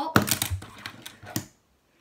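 Fingerboard popped for an ollie: a sharp click of the tail against the tabletop just after the start, then a few lighter clicks as the board is caught in the hand over the next second.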